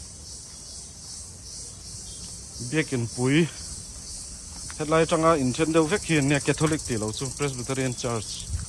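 A steady, high-pitched insect chorus, with a person's voice speaking briefly about three seconds in and again from about five seconds on.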